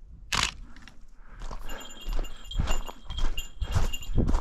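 Footsteps crunching on a gravel hiking trail, about two steps a second in the second half. From about a second and a half in, a high pulsing tone comes and goes over the steps.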